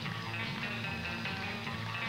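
Guitar-led instrumental music with steady low bass notes: the skater's program music.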